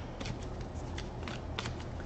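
A tarot deck being shuffled by hand, with several light clicks of card against card.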